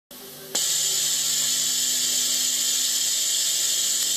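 Steady hiss with a faint low hum from a PA sound system, switched in with a click about half a second in.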